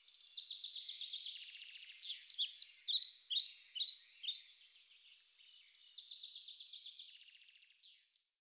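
Birds chirping and trilling, all high-pitched, with a louder run of short falling chirps about two to four seconds in. It fades and stops just before the end.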